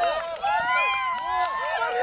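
Several young players' high-pitched voices shouting and calling out to one another, overlapping, during play on the pitch.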